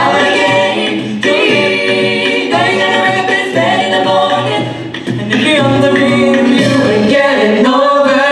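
Live a cappella group of six mixed male and female voices singing in close multi-part harmony through microphones, with a low sung bass line under the chords.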